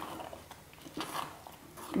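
Wooden spatula stirring thick, sticky cooked rice and jaggery in a steel pot: faint soft squelching with a few light scrapes, the clearest about one second in.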